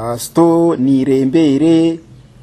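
A man's voice drawing out about four long syllables on nearly level pitch, in a chant-like way.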